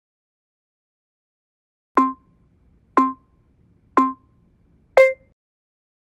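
Workout interval timer's countdown beeps: three identical short tones a second apart, then a fourth, higher-pitched tone marking the end of the rest period.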